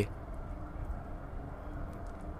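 Faint, steady background noise with a low hum, with no distinct event.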